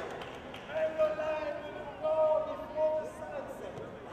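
A young child's high voice in a few short phrases, each held at a fairly level pitch.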